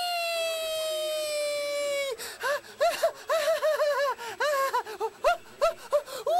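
A high voice holds one long note that sinks slowly in pitch for about two seconds, then breaks into a quick run of short notes that each rise and fall.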